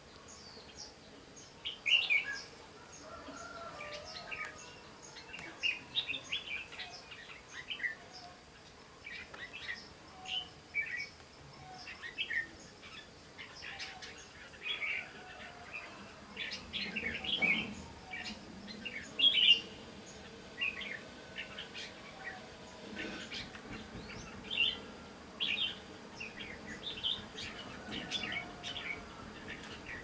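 Red-whiskered bulbuls singing: short, bright whistled phrases follow one another throughout, loudest about two seconds in and again near the twenty-second mark.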